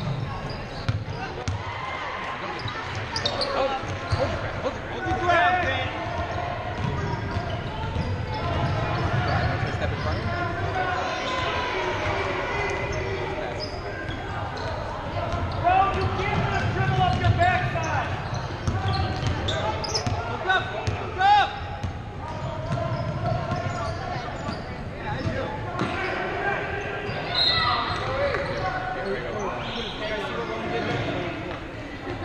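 Basketball game on a hardwood gym floor: the ball bouncing, sneakers squeaking and players' and spectators' voices, echoing in the large hall.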